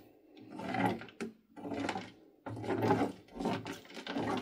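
Thick slime being stirred and scraped around a tray with a silicone spatula, in a run of separate strokes about one a second.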